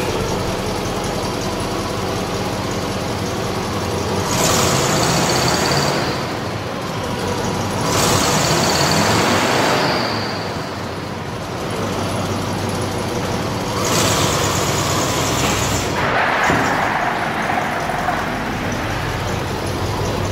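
1975 International Scout II engine running at idle and revved three times, each rev a louder stretch of a second or two, then pulling away.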